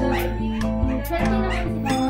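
Background music with a steady run of notes, over which a dog gives a few short yips.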